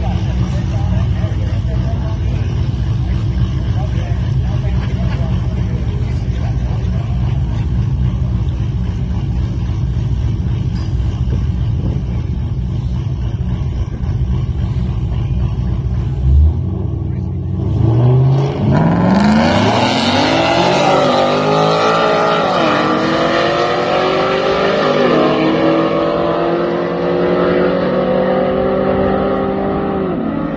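Ford F-150 pickup's bolt-on 5.0 V8 running steadily at the drag-strip starting line, then launching about halfway through. Its note climbs and drops again and again as the ten-speed automatic shifts up quickly through the gears, and it fades as the truck heads down the strip.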